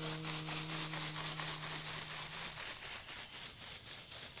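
A chakapa leaf-bundle rattle shaken in a steady swishing rhythm, about four to five shakes a second, under a man's voice holding the final note of an icaro, which fades out a little past halfway.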